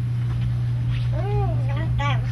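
Steady low electrical hum from the microphone and sound system, with one short rising-and-falling vocal sound from a person about a second in.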